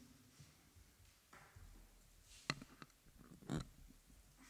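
Quiet room tone with a few sharp small clicks about two and a half seconds in, then a short, louder low noise about three and a half seconds in.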